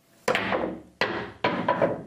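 Pool cue striking the cue ball hard in a fast jump shot, followed by sharp clacks of the cue ball hitting the 8-ball as the 8 compresses the cushion and double-kisses the cue ball. There are four or five knocks in under two seconds, each ringing briefly.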